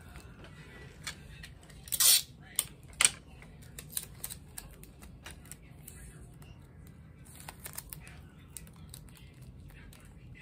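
Hands handling candy packets and a plastic Easter basket: a short crinkling rustle about two seconds in, then a few sharp clicks and small taps as items are pressed into place.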